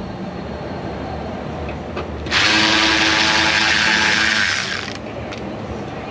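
Cordless power tool running in one steady burst of about two and a half seconds, starting sharply about two seconds in and stopping sharply, as it backs out a Torx fender liner bolt.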